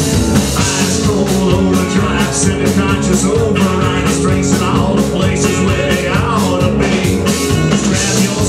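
Live rockabilly-punk band playing loud and steady with a driving drum beat, in an instrumental stretch between sung verses.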